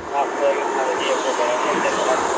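Indistinct, distant voices over a steady rushing noise.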